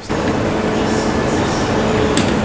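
Steady machine noise with a faint low hum, unchanging throughout.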